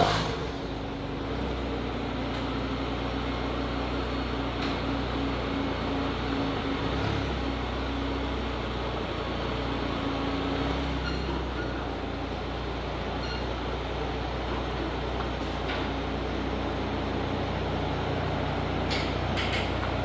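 Citroën Saxo VTS 16V's 1.6-litre four-cylinder engine idling steadily through a newly fitted exhaust: a bit deeper, but not noisy.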